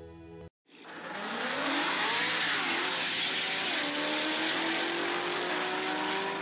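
A car accelerating hard down a drag strip: the engine note climbs, drops back at each upshift and climbs again, under a loud rushing noise.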